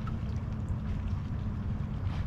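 A steady low machine hum under an uneven low rumble of wind buffeting the microphone.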